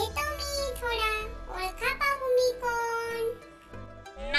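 A high, childlike voice singing in short sing-song phrases over light background music.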